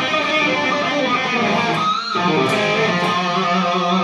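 Electric guitar played through a November Child overdrive/distortion pedal: sustained distorted notes, with a brief break and a short rising slide about halfway through.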